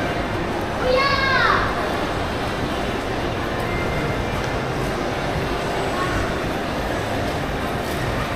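Steady background hum of a large indoor mall hall, with one distant voice calling out about a second in, its pitch falling, and a few faint voices later.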